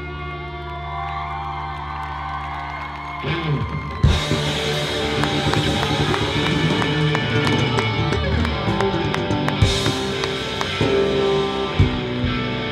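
Live rock band on electric guitars through Marshall amps, bass and drum kit: sustained, bending guitar notes over held low notes, then the drums build in about three seconds in and the full band crashes in about a second later with cymbals and a driving beat.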